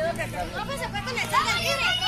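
A group of children talking and calling out over one another, with louder, high-pitched shouts starting about a second and a half in.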